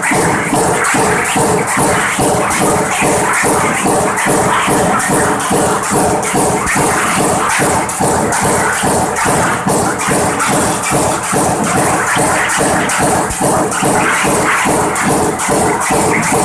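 Power press on a high-speed stamping line running continuously at about 165 strokes a minute: an even, rapid clatter of nearly three blows a second over a steady machine hum, with a strip fed by an NC servo roll feeder at a 126 mm pitch.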